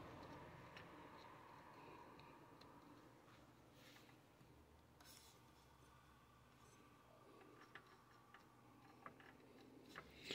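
Near silence, with a few faint, brief clicks of fingers handling wiring and connectors inside an opened inverter welder.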